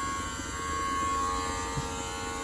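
Small smoke leak-detection machine running with a steady electric buzz and hum. It is pumping smoke into the carburettors to find air leaks.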